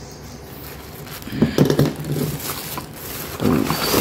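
Short wordless vocal sounds from a man, like hums or grunts, over light handling noise. Near the end, a plastic bag rustles as he digs through it.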